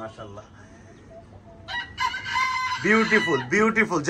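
A rooster crows once about halfway in, a held call of a bit over a second.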